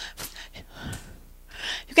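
A woman breathing between spoken phrases while exercising, with a quick in-breath near the end. A few faint taps are heard, likely her footsteps.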